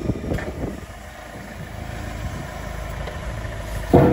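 Engine of the machine lifting the load running steadily and growing slightly louder toward the end, with a sharp metal clunk at the start as the heavy steel square drive sub is dropped into the auger's square drive box.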